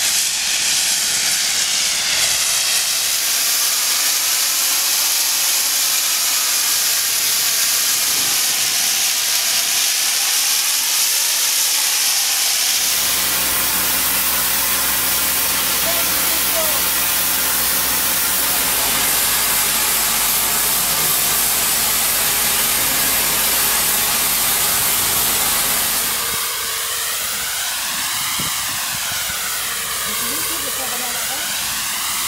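High-pressure water jet from a robotic nozzle head blasting rust and coating off a steel storage tank wall. It makes a loud, steady hiss with a sweeping, wavering tone. A steady low machine hum runs underneath from about a third of the way in until near the end.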